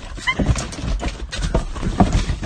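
An animal gives one short, high yelp just after the start, followed by a scatter of knocks and rustling.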